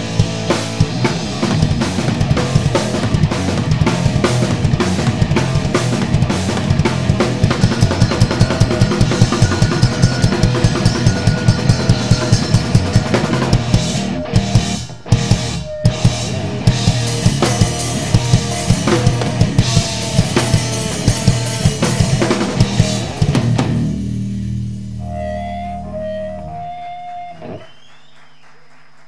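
Live rock band playing an instrumental passage: fast, driving drum kit with distorted electric guitar and bass. Two short breaks come about halfway through, and near the end the band stops and the last chord rings out and fades.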